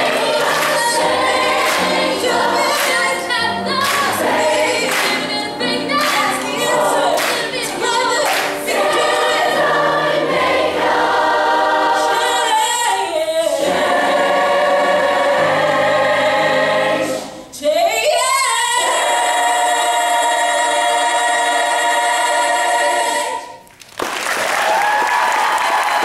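Large high school mass choir singing in many parts, ending a phrase on a long held chord that cuts off sharply a few seconds before the end.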